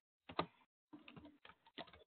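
Faint computer keyboard typing: one keystroke about half a second in, then a quick run of keystrokes in the second half as a short search query is typed.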